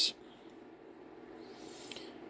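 Faint steady hiss with a low hum underneath, growing slightly louder near the end.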